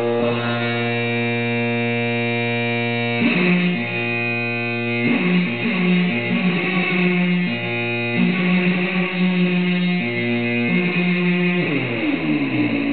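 Guitar-led music with long held chords that change every second or two, and a pitch sliding downward near the end.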